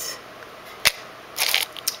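Metal jewelry being handled in an open jewelry-box drawer: a sharp knock about a second in, then a brief rattling clatter of small pieces.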